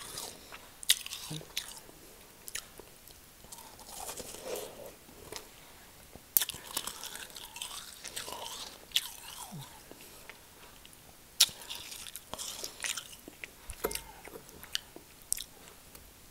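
Close-miked biting and chewing of packed real snow from a snowball: a sharp crunch every few seconds, with softer wet chewing between the bites.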